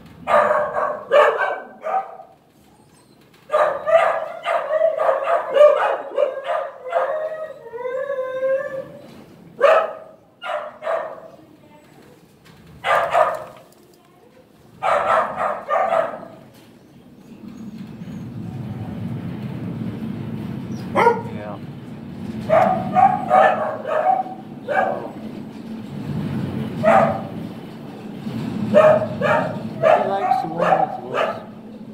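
Dogs barking in repeated short bursts, with a wavering howl-like call about eight seconds in. From about 18 seconds a steady low rumbling noise runs under the barks.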